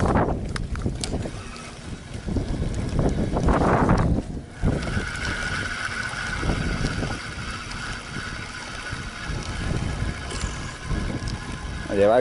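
Wind buffeting the microphone, and from about four seconds in a steady whine from a surfcasting reel being cranked as the line is wound in.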